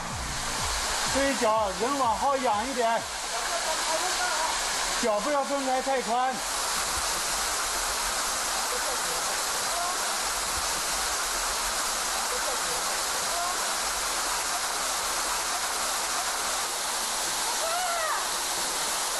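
Waterfall pouring steadily down a rock face, a constant rushing of water. A voice cries out in two short wavering bursts in the first few seconds.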